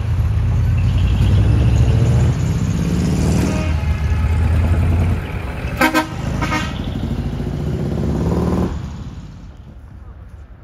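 Engine of a small decorated flatbed truck running as it pulls away, rising in pitch around three to four seconds in. Two short horn toots about six seconds in, then the engine fades as the truck drives off.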